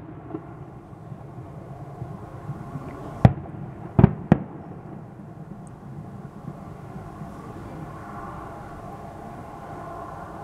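Aerial firework shells bursting: three sharp bangs, one a little over three seconds in and two close together about a second later, with a weaker pop near the start, over a steady background hum.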